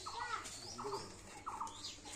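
Faint small-bird chirping: four or five short squeaky calls spread through the two seconds, with a few thin higher chirps above them.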